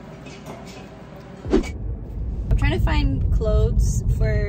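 Quiet room tone, then from about one and a half seconds in a steady low road rumble inside a moving car's cabin, with a woman talking over it.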